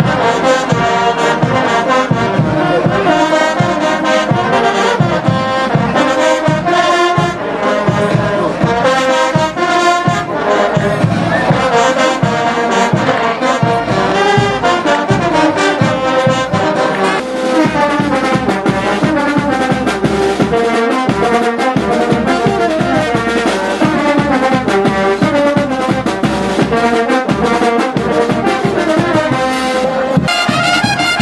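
Brass band of sousaphones, trumpets and saxophones playing a festive tune over a steady drumbeat, loud and continuous.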